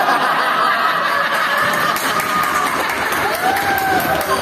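Several voices at once: badminton players and onlookers laughing and calling out together, the voices overlapping with no single speaker standing out.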